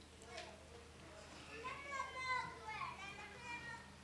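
Faint chatter of several congregation members talking to one another at once, a few voices rising and falling above the hum of the hall.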